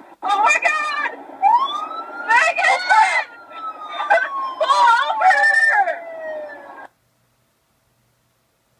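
A siren rising in pitch and then slowly falling, mixed with loud voices shouting over it. The sound cuts off suddenly near the end.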